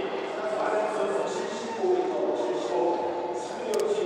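Men shouting and cheering in celebration of a big hammer throw, several voices held and overlapping. Two quick clicks come near the end.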